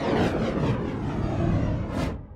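Whoosh sound effect closing an intro logo sting: a dense rushing noise with falling sweeps, cut off abruptly at the end.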